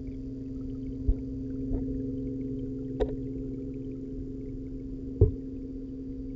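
Steady low hum of reef-aquarium pumps, heard underwater through the camera's waterproof housing. A few short sharp knocks come over it, the loudest about three and five seconds in.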